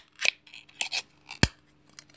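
Ring-pull lid of a small metal cat-food tin being peeled open: a few short scraping, tearing strokes of the thin lid metal, then a sharp snap about one and a half seconds in.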